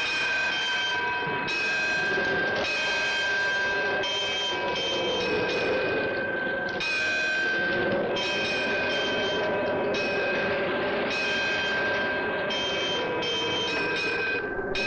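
Hindu temple bells rung over and over. A new strike comes every second or two, and the rings overlap into a steady ringing tone.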